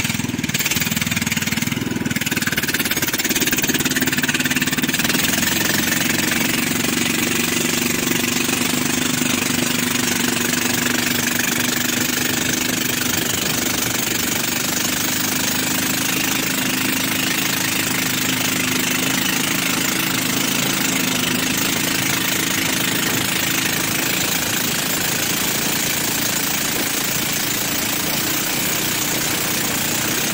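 Motor of a rabeta long-tail river canoe running steadily under way, a constant loud drone.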